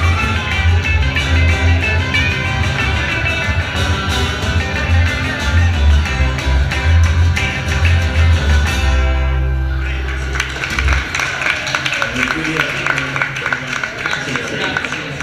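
Live rockabilly trio of acoustic rhythm guitar, electric lead guitar and double bass playing the last bars of a song, ending on a held final chord about nine seconds in that dies away by about eleven seconds. After it come clapping and voices from the room.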